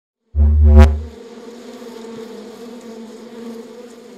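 Wasp-buzz sound effect: it starts with a loud low thump and a sharp click, then settles into a steady buzz.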